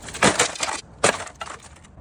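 An LCD monitor being torn apart by hand: its frame and circuit board crunch and crack in two bursts, the first about a quarter second in and a sharper, shorter one about a second in.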